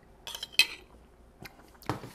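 A spoon clinking against a soup bowl as a spoonful is taken: a quick run of clinks with a brief ring, loudest about half a second in, then two lighter knocks of the dishes near the end.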